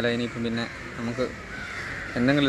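Speech: a man's voice trailing off, then a few short spoken sounds.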